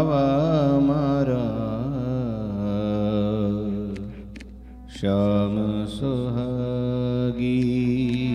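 Man singing a Hindu devotional kirtan into a microphone, his melody wavering and ornamented, over a harmonium's sustained notes. The singing fades about four seconds in and picks up again a second later.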